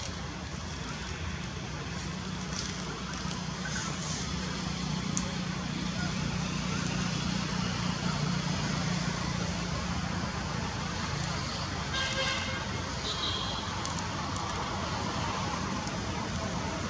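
A low, steady engine hum from a motor vehicle in the distance over outdoor background noise, swelling and fading over several seconds; a short high-pitched call sounds about twelve seconds in.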